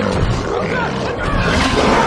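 Film sound design of a large dinosaur, the Indominus rex, roaring and growling in rising and falling glides over a deep, heavy rumble.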